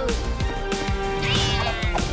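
Upbeat cartoon transformation music with a single cat meow, about a second and a half in, that rises and then falls in pitch.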